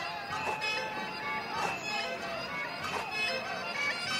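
Traditional Chinese opera instrumental accompaniment: a reedy wind instrument holds and slides between notes, over three sharp percussion strikes about a second apart.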